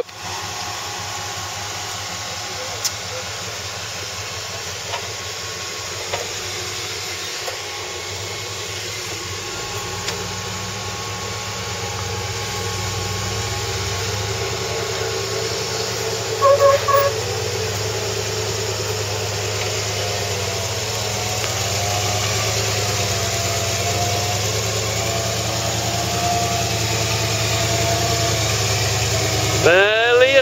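Engine of a modified Land Rover Series off-roader running under load as it crawls up steep slickrock, getting steadily louder as it nears. A short high squeal sounds about sixteen seconds in.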